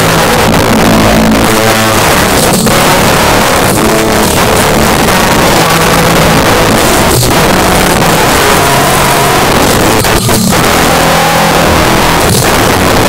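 Swing jazz music playing loud and dense, with a bass line moving from note to note.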